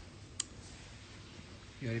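A single short, sharp click about half a second in, over faint room noise; a man's voice begins near the end.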